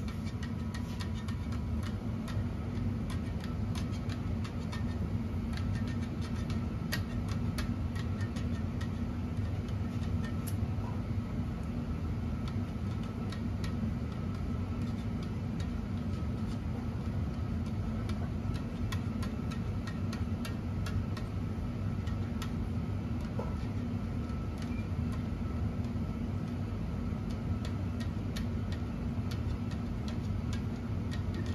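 Tennis racquet string being woven by hand through the strung bed, with scattered light ticks and clicks as the string rubs and snaps over the other strings, over a steady low hum.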